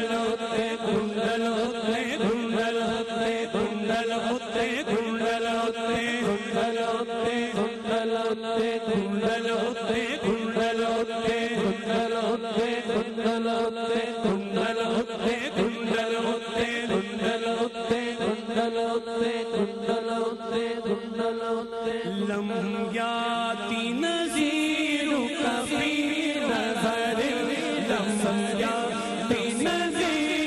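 Devotional vocal chanting: a male voice sings over a steady drone held by backing voices. The lead line changes and becomes more ornamented about three-quarters of the way in.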